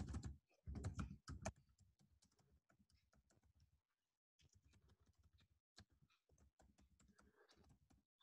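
Computer keyboard typing: a quick run of key clicks in the first second and a half, then fainter, sparser keystrokes.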